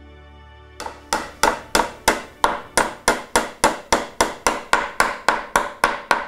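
A hammer tacking small nails into a timber canvas stretcher frame: a steady run of quick, evenly spaced strikes, about three a second, starting about a second in.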